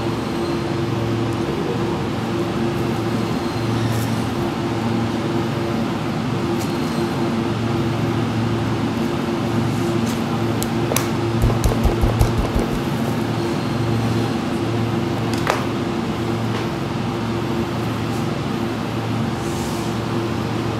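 A steady machine hum, like a fan or cooling unit running, with a few sharp clicks of a butcher's knife on the cutting board and a short run of low thumps about halfway through.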